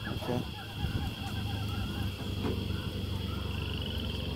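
Faint, indistinct voices in the background over a steady high-pitched hum and a low rumble.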